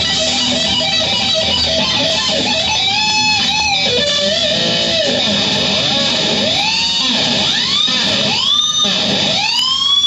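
Electric guitar playing lead lines high on the neck, with repeated string bends that rise and fall in pitch, coming thicker in the second half.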